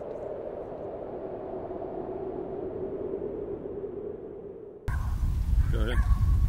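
A steady, low humming drone from the studio logo intro, fading a little, cut off abruptly about five seconds in by a loud low outdoor rumble on the microphone as a man starts to speak.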